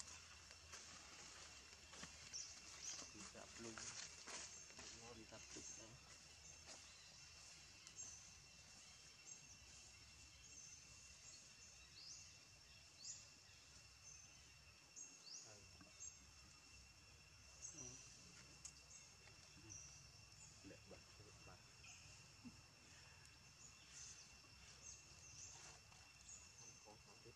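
Near silence with faint outdoor ambience: a steady high insect drone and short bird chirps scattered throughout.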